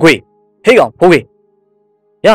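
A narrator speaking a few short words in Burmese, with pauses between them, over a faint held tone of background music.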